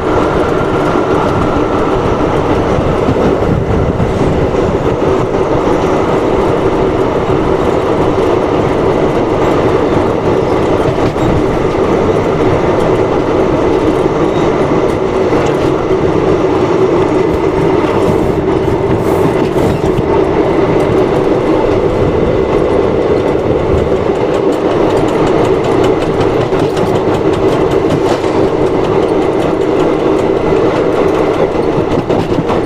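Passenger express train running at speed, heard from aboard a coach: the wheels run on the rails in a steady, loud rumble with no letup.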